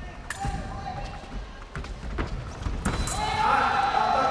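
A few sharp knocks from sabre fencers' feet stamping on the piste as they move, then from about three seconds in a loud, drawn-out shout.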